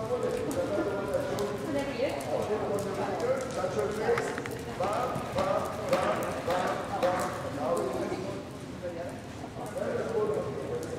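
Hoofbeats of a horse cantering on soft arena sand, with a person talking over them.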